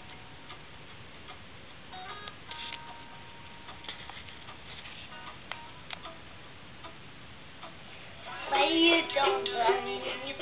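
Small wooden ukulele: a few faint plucked notes and clicks on the strings, then, about eight and a half seconds in, loud strummed chords begin.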